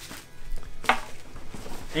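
Handling noise from a backpack's fabric insert being lifted and turned: soft rustling, with a single sharp knock a little under a second in.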